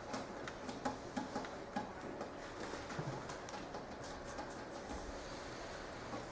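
Faint, irregular light clicks and taps over quiet room tone, thinning out after about four seconds.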